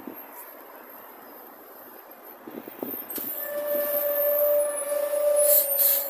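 A city bus passing close by: a steady whine with a rushing noise that starts about three seconds in and grows louder, peaking near the end.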